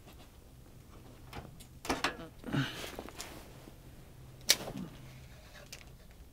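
Quiet handling of a fishing rod and spinning reel, soft rustles and one sharp click about four and a half seconds in, over a faint low steady hum.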